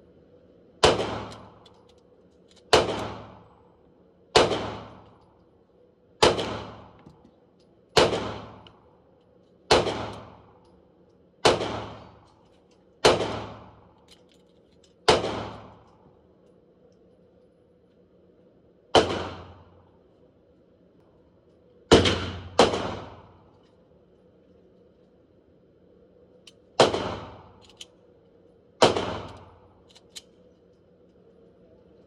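Gunfire echoing in an indoor shooting range: a slow string of about fourteen single shots, mostly about two seconds apart, with a pause after the middle and a quick pair a little past 20 seconds.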